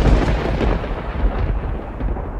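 Thunder-clap sound effect: a loud rumbling crash, loudest at the start and slowly dying away.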